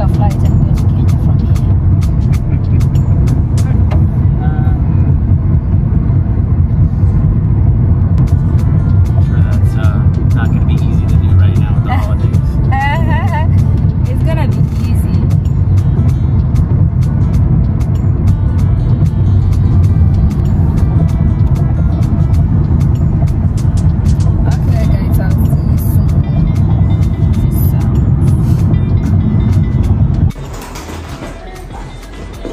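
Road and engine noise inside a moving car's cabin: a loud, steady low rumble that does not let up.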